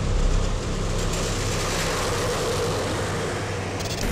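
Otokar Tulpar tracked infantry fighting vehicle running: a steady engine and track noise at an even level.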